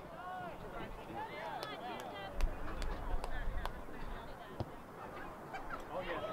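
Distant, wordless shouting from players across an outdoor soccer field, with several sharp knocks scattered through the middle and a few seconds of wind rumbling on the microphone.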